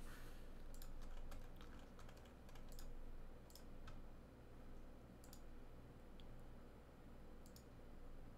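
Faint, scattered computer keyboard typing and mouse clicks over a low steady hum.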